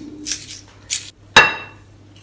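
A small knife scraping out the inside of a raw potato, then one sharp clink of the knife against a plate about one and a half seconds in.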